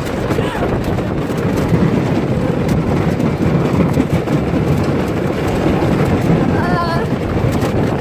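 Wooden roller coaster train rumbling and clattering along its track, heard from on board, loud and steady. A rider gives a short high yell about seven seconds in.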